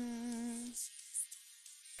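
A voice holding one long sung note that cuts off under a second in, over faint, thin background music; after that the sound drops almost to quiet.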